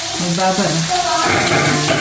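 Chicken sizzling as it fries in its own fat, with no oil, in a stainless steel Saladmaster pan, a steady hiss. Over it a person's voice, with one sound held for most of the last second.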